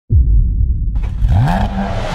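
Intro sound effect of a car engine: a deep rumble that starts abruptly, then revs up, rising in pitch about a second and a half in and holding there.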